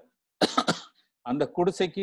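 A short cough from a person about half a second in, followed by a man speaking again.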